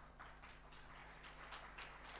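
Faint, scattered hand claps from an audience: a few irregular sharp claps over a low steady hum.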